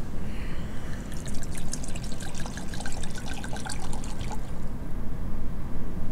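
Red wine poured from a glass bottle into a wine glass, gurgling for about three seconds, starting about a second in, over a low steady hum.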